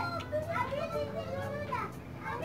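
High-pitched voices chattering, rising and falling in pitch, with a low steady hum underneath.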